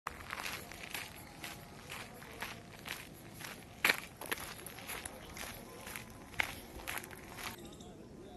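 Footsteps walking on a dirt path, about two steps a second, stopping shortly before the end.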